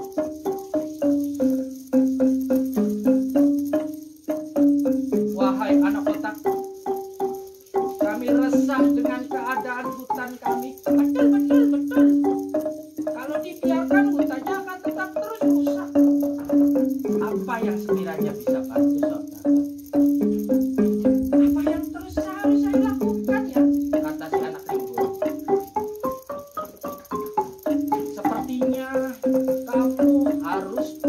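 Gambang, a Javanese wooden-barred xylophone, played with two padded mallets in a quick, continuous run of struck notes, several a second, the melody stepping up and down.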